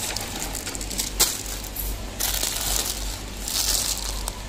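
Plastic instant-noodle packets crinkling and rustling as a hand rummages through them in a cardboard box. There is a sharp click about a second in and a louder burst of crinkling near the end.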